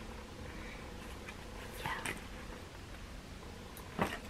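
Quiet room tone with a steady low hum, and one faint short sound about two seconds in.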